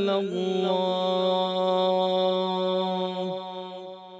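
Adhan, the Muslim call to prayer, chanted by a single voice: one long held note that drops and fades out near the end.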